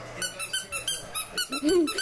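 A squeaky toy squeaked rapidly, a quick run of short, high squeaks about eight a second, with a brief vocal sound about three-quarters of the way through.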